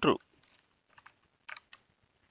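Computer keyboard being typed on: a few separate keystrokes as a short word is entered, the two clearest about a second and a half in.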